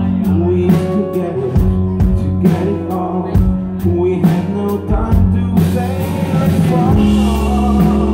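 Live rock band playing: a male voice sings over strummed acoustic guitar and a drum kit. Cymbals and bass swell in about two-thirds of the way through as the band builds.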